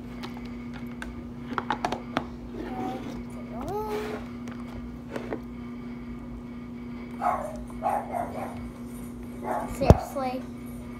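Slime being stretched and kneaded by hand in a plastic bowl, with scattered soft clicks. A child makes a few wordless vocal sounds, and there is a sharp knock near the end.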